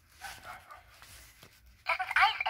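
A talking fashion doll being handled, with faint rustling and a few brief faint pitched sounds. Near the end the doll's recorded voice starts loudly through its small speaker.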